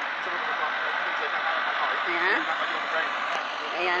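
Delivery truck's engine running steadily to drive its truck-mounted crane while it unloads roof trusses, with a brief voice about halfway through.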